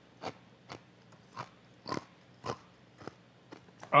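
Laptop keys being tapped: short, sharp clicks at an irregular pace of about two a second.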